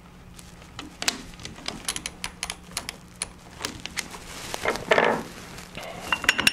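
Quick-jaw-change lathe chuck being worked by hand: irregular hard clicks and taps as its jaws are turned and moved out with the T-handle wrench and a round workpiece is set against them, with a brief rubbing scrape about five seconds in.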